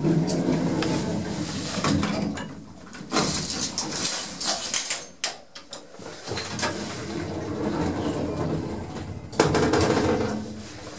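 A 1950s swing-door lift at work: the car's sliding doors run and close with clunks, then the car's drive hums steadily as it travels, with a sudden louder noise near the end.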